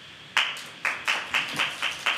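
A small audience clapping, beginning about a third of a second in, in an even beat of about four to five claps a second.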